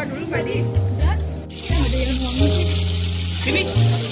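Background music with a prominent bass line. About one and a half seconds in, the hiss of beef sizzling on a stone-coated grill plate comes in underneath it.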